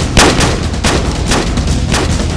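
Gunshot sound effects: single shots fired in a steady series, about one every half second, with a low rumble underneath.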